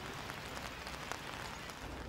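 Steady outdoor background noise: an even hiss with a low hum underneath and a few faint crackles.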